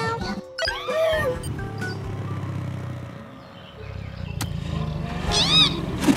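Cartoon background music with two short, squeaky cries that rise and fall in pitch, a brief one about a second in and a louder one near the end.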